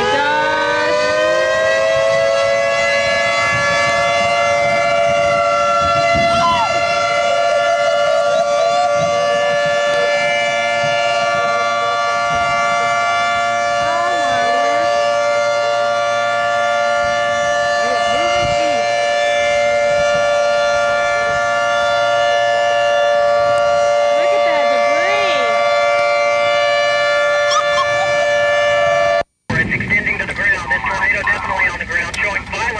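Outdoor tornado warning siren winding up in pitch over the first two seconds, then holding one steady tone that cuts off abruptly near the end. The siren is sounding a tornado warning.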